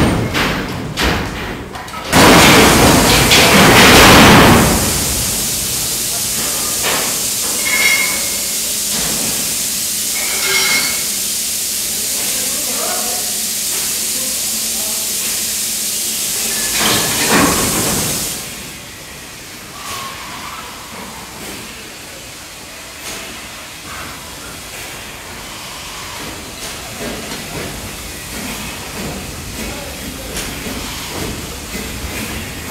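Coal tumbling loudly out of a tipping side-dump mine wagon into the bunkers below for the first few seconds. A steady high hiss follows and cuts off about 18 seconds in, leaving a quieter hall with occasional knocks.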